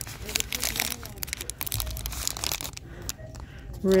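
Soft plastic film packaging of a pack of cleansing wipes crinkling as a hand grips and squeezes it. The crackling is busiest in the first three seconds and thins out after that.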